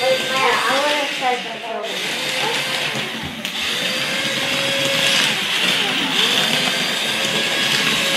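Remote-control centipede toy crawling: a steady whir of its small battery-powered motor and gears driving the plastic body and legs.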